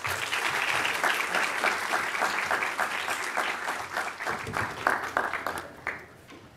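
Audience applauding: a dense patter of many people clapping that thins out over the last couple of seconds and stops near the end.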